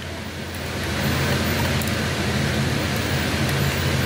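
Steady hum of the industrial lockstitch sewing machine's electric motor running while the machine is not stitching, growing a little louder about a second in.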